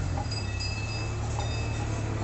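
A steady low hum with scattered faint, high ringing tones, like small metal chimes.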